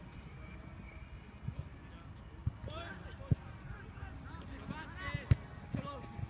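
Football kicked on a grass pitch: a few sharp thuds, the loudest about three and five seconds in, with players' shouts calling between them.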